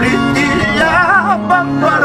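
Andean harp playing a sad huayno, with a man singing over it with a wavering vibrato.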